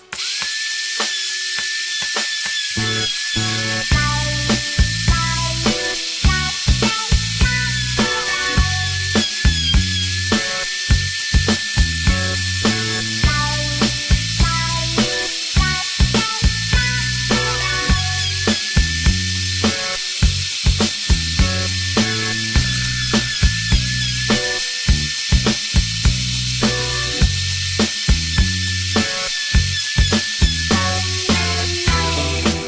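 Electric router running steadily with a high whine as it mills a wooden stave drum shell round, with background music with a regular beat playing over it.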